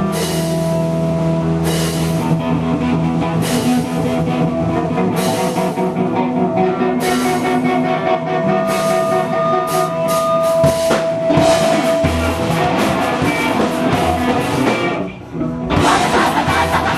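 Live rock band playing an instrumental passage: electric guitars holding notes over bass and a drum kit, with cymbal crashes about every second and a half at first and busier drumming later. Near the end the band drops out for a moment, then comes back in together.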